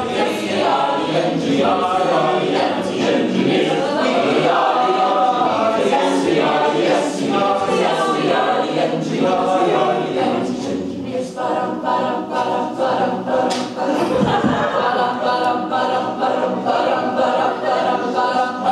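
Mixed-voice a cappella group singing in close harmony with no instruments, moving from shorter syllabic phrases into long held chords about two-thirds of the way through.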